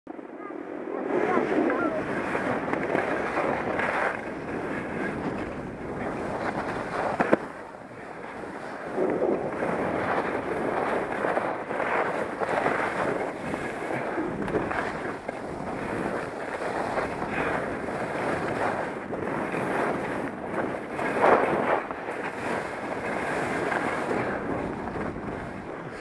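Skis scraping and hissing over packed, bumpy snow during a downhill run, swelling and easing with each turn, with wind buffeting the microphone. A couple of sharp knocks stand out, about seven seconds in and again near twenty-one seconds.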